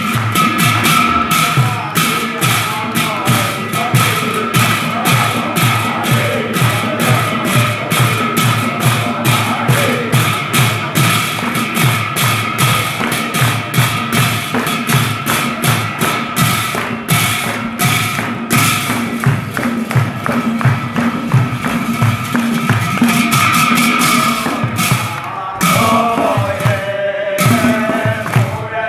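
A pair of nagara drums beaten fast with sticks, with large brass cymbals clashing in time and hands clapping along: a steady, driving beat under a constant cymbal ring. Voices join in chanting near the end.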